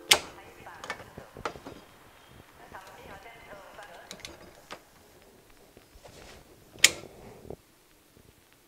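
Sharp clicks and knocks of an overhead camera and its mount being handled and taken down. The two loudest come just after the start and about seven seconds in, with a few lighter taps between.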